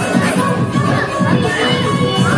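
An Odia dance song plays with a steady beat while a group of children shout and cheer over it.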